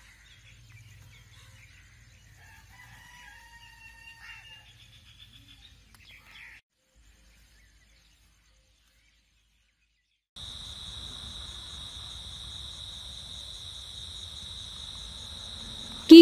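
Faint outdoor ambience with a rooster crowing once, held for a second or two. It cuts to silence for a few seconds, and then a steady high chirring of crickets starts.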